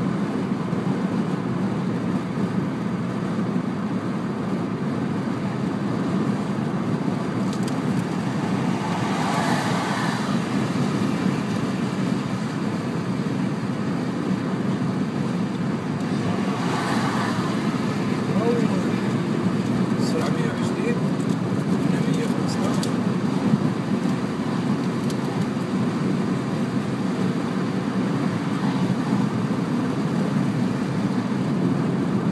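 Steady road and engine noise inside a car's cabin at motorway speed, with two brief rushes of hiss about nine and seventeen seconds in.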